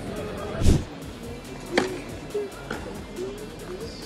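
Background music, broken by a heavy thump less than a second in and two sharper knocks, about two and three seconds in.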